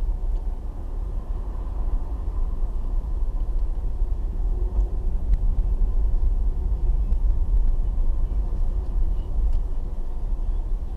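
A car's engine and road rumble heard from inside the cabin while driving, a steady low rumble.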